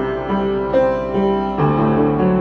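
Upright acoustic piano played solo: a slow melody over chords, with new notes struck a couple of times a second and left ringing.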